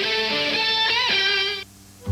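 Short electric-guitar musical sting closing a Chevrolet advert: a strummed chord held about a second and a half, bending in pitch about a second in, then cut off.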